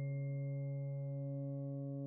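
Ambient background music: a steady, low drone of several held, ringing tones, with a higher ringing note fading away.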